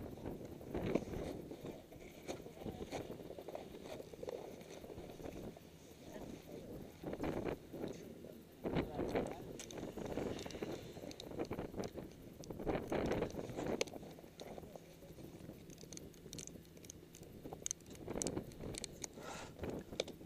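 Gloved hands strapping boots into snowboard bindings: irregular rustling and scraping of gloves, straps and boots against the board and snow, with a few sharp clicks near the end.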